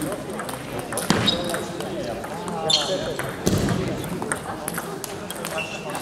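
Table tennis balls clicking irregularly off tables and bats, from more than one game at once, in a large hall with voices in the background.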